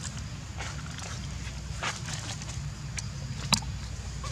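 Dry leaves and twigs crackling and snapping underfoot in short scattered bursts, with one sharp snap about three and a half seconds in, over a steady low rumble.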